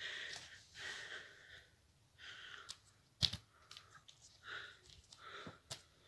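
Faint breathing and soft handling noise around a small phone tripod, with a few light clicks and one sharp click about three seconds in.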